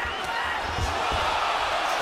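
Boxing arena crowd noise swelling as a hurt fighter takes punches on the ropes, with a couple of dull low thuds about a second in.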